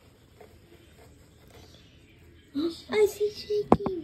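A person's voice making a drawn-out, wavering sound without words, starting a little past halfway, with two sharp clicks near the end.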